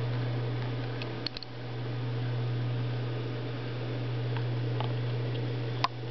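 A steady low hum throughout, with a few faint clicks about a second in and again near the end.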